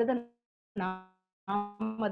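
A single short pitched tone about a second in, holding one pitch and fading out within about a third of a second, between bits of speech.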